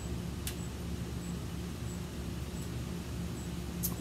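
Steady low mechanical hum with a faint hiss, and a single faint click about half a second in.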